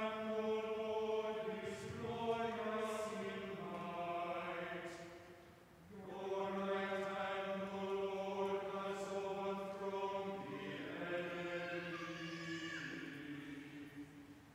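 Church choir chanting a canticle in long sustained phrases, with a short break between phrases about six seconds in and another near the end.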